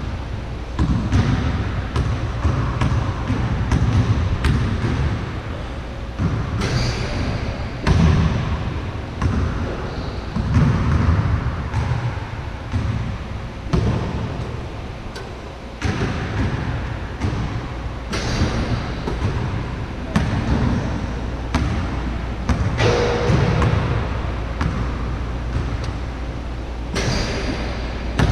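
A basketball dribbled and bounced on a hard court: sharp thuds at uneven intervals, over a steady low rumble.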